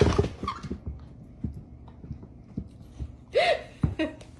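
A large dog jumping around on a hardwood floor in play, its paws and body landing in scattered low thumps, with one short vocal sound about three and a half seconds in.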